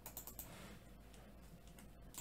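Faint clicks of a computer keyboard and mouse: a quick cluster of several near the start and one more near the end.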